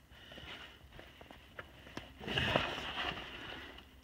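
Handling noise from a tractor's three-point hitch turnbuckle and clevis being worked by hand: faint scattered clicks of metal parts, then about a second of louder rustling a little past halfway.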